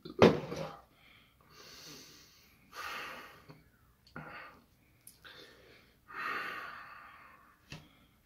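A man breathing heavily in a run of long, hissing breaths with pauses between them, after a short loud vocal sound near the start; he is uncomfortably full and dizzy after chugging several bottles of milk drink.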